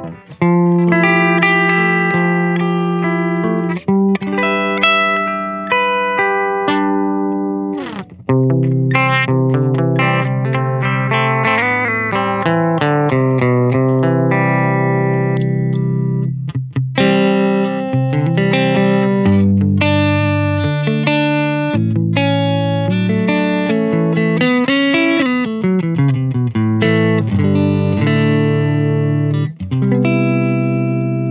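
Electric guitar with single-coil pickups played through a Balthazar Cabaret MKII, a 15-watt EL84-powered tube amp: chords and note runs, with a short break about eight seconds in and another about halfway through.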